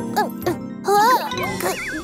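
Cartoon sound effects over children's background music: a series of short tinkling sounds that slide up in pitch, then a wavering, wobbly tone near the end.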